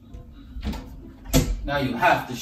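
Voices begin talking over faint background music, with a sudden loud sound about a second and a half in.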